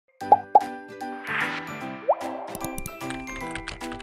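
Intro music with cartoon sound effects: two quick plops, a shimmering swoosh, then a short rising bloop about two seconds in, after which a light melodic tune plays with quick clicks over it.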